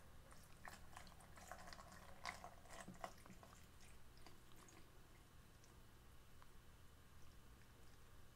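Water poured from a plastic measuring jug into a plastic beaker, faintly splashing and trickling. The splashing is busiest in the first half and thins to a few scattered drips later.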